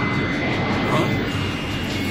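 Animated mobile-suit thruster sound effect: a steady, jet-like rushing noise with a faint high tone running through it.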